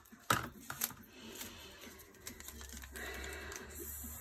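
A roll of glue dots being handled, with a sharp click about a quarter second in and a few small taps. Then comes a steady peeling rustle over the second half as the strip of glue dots is unwound from the roll.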